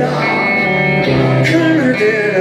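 Live rock band playing: electric guitars over bass and drums, with a cymbal hit about one and a half seconds in.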